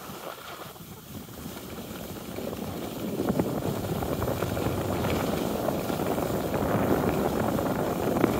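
Wind rushing over the microphone of a camera on a descending skier, with the hiss of skis sliding on groomed snow; it grows louder from about three seconds in.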